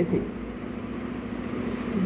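A woman's voice finishing a word at the very start, then a pause filled with steady background noise and a faint, even hum.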